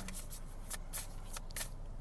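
A tarot deck being shuffled: a handful of short, crisp card snaps spread over two seconds.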